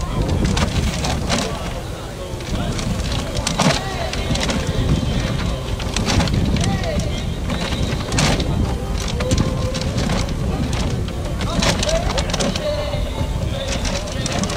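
Clear acrylic raffle drum being turned by hand, its load of paper tickets sliding and tumbling inside, with repeated clicks and knocks from the drum, over background crowd chatter.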